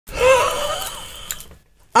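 A man's high, wavering vocal exclamation with breathy hiss, fading out over about a second and a half, with a short click near the end.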